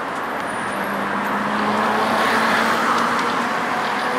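Road traffic: a passing vehicle's noise swells up to a peak about two and a half seconds in, over a steady low hum.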